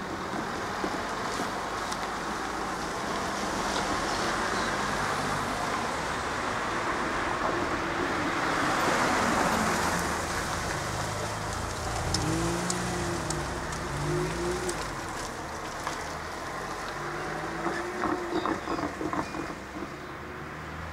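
Cars driving over a level crossing with the barrier up, tyre and engine noise rising and falling; the loudest passes close by about halfway through.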